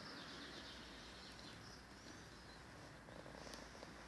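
Near silence: faint garden ambience with a few faint bird chirps.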